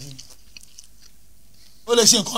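A man's voice trails off, then a pause of about a second and a half holding only low room noise and a few faint small clicks, and he starts speaking again near the end.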